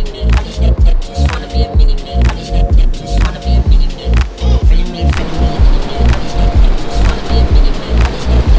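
Background music: a hip-hop track's instrumental section, with a steady heavy bass beat about twice a second under a repeating melodic line.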